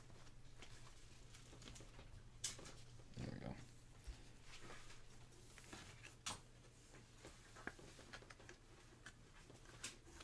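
Quiet handling of a trading card and plastic card holders: a card slid into a soft penny sleeve and a rigid plastic toploader, with light rustling and three sharp plastic clicks. A brief low sound with a rising pitch about three seconds in, over a faint steady room hum.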